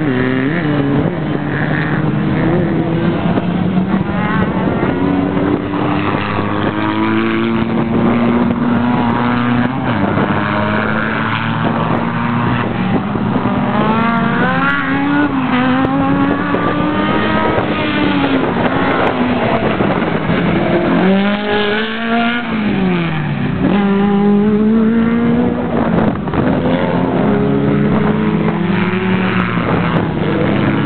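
A racing car's engine working through a slalom course, revving up hard and dropping off again and again as it accelerates between gates and lifts off for the turns.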